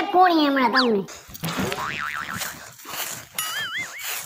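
A voice speaking for the first second, then a cartoon-style boing sound effect with a wobbling pitch, heard twice, the second one clearer.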